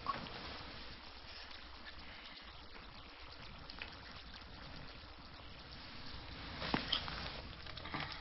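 Faint kissing sounds over a low hiss, with a few short, louder sounds near the end.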